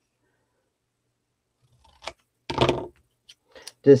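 Scissors cutting the end of a paper strip at an angle: a short snip about two seconds in and a longer cut just after, then a few light clicks.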